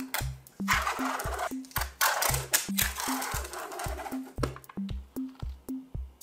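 A paper seal strip being peeled off a plastic honeycomb box, a crackling, tearing noise for a few seconds from near the start, over background music with a steady beat.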